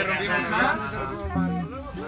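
People talking over an acoustic guitar being played.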